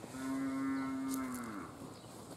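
A cow mooing once: one long, steady call that drops in pitch as it ends.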